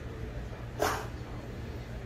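A husky gives one short, breathy huff about a second in, its grumpy reply to being questioned.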